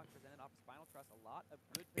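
Quiet, low-level speech, with a single short click shortly before the end.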